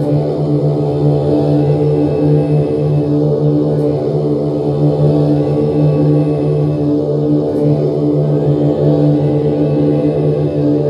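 Guitar played as a steady drone: one held chord that hardly changes.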